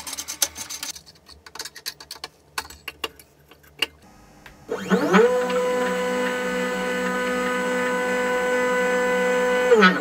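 Light clicks and rubbing from hand work on the CNC machine's parts. Then, about five seconds in, the stepper motors whine as they drive an axis through its TR8 lead screw: the pitch rises as the move speeds up, holds one steady tone for about five seconds, and drops away as the axis stops.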